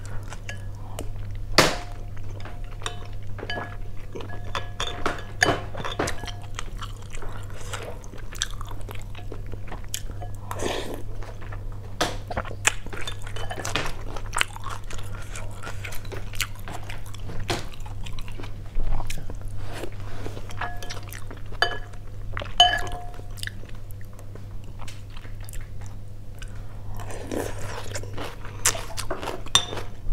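Close-miked chewing and crunching of beef stew noodle soup with raw bean sprouts, which are very crunchy, with scattered small clicks over a steady low hum.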